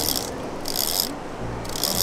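Conventional surf reel being cranked by hand, its gears and ratchet giving three short whirring, clicking bursts about a second apart.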